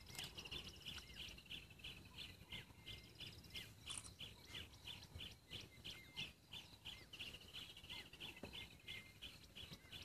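Faint bird chirping: a high short note repeated evenly about three times a second, with a few other scattered chirps.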